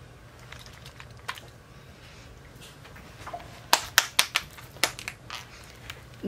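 Hands handling a small plastic bottle and its cap: after a quiet stretch, a quick run of sharp plastic clicks and taps starts about three and a half seconds in and lasts a second or so.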